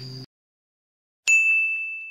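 A steady insect drone cuts off abruptly just after the start, leaving dead silence. Then a single bell-like ding sound effect strikes about a second and a quarter in, ringing on one high tone and fading out slowly.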